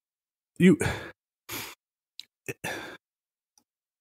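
A person sighing and breathing out into a close microphone twice after a spoken word, with a couple of short mouth clicks between the breaths.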